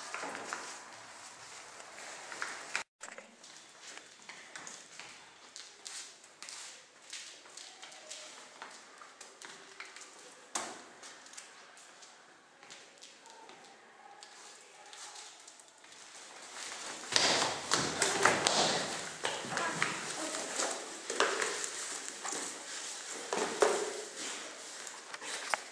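Scattered taps, knocks and light thuds of people moving about a room. From about two-thirds of the way in this grows into louder, denser rustling and scuffling, like bodies and clothing against the floor.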